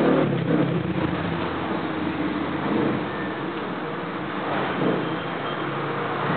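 Motor vehicle traffic passing outside. An engine is heard in the first seconds and fades over about three seconds, leaving a steady background of traffic noise.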